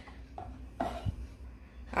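Wooden spoon stirring thick tomato sauce in a pot, faint, with a soft knock about a second in.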